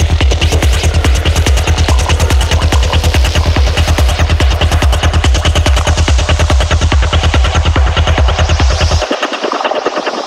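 Dark psytrance track with rapid, driving electronic pulses over a heavy bass line. The bass drops out abruptly about nine seconds in, leaving the higher layers running on.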